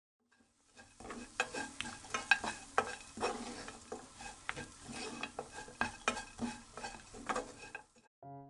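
Wooden spatula stirring and scraping small dried anchovies and almonds around a nonstick frying pan, with irregular clicks and taps against the pan over light sizzling, starting about a second in.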